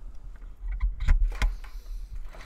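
Steady low electrical hum with a short run of clicks and knocks in the middle, handling noise at a computer desk.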